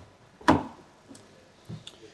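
A single sharp click-clunk about half a second in, with a fainter knock near the end, from the rear passenger door of a 2018 Volkswagen Polo being opened.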